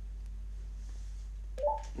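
Steady low electrical hum with little else, and a brief vocal sound near the end.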